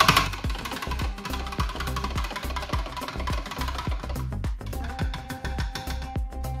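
Background music with a steady beat: regular sharp percussion hits over a repeating bass line.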